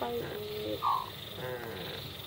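A hen gives a short call about a second in, between a person's coaxing words.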